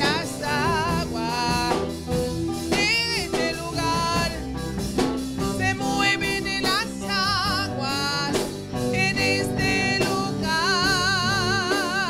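Live church worship band: women singing a Spanish-language worship song over electric guitar, keyboard and a drum kit. The melody wavers with vibrato and ends in a long held note with vibrato near the end.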